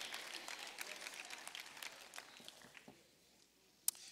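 Faint, scattered clapping from a congregation, thinning out and stopping about three seconds in.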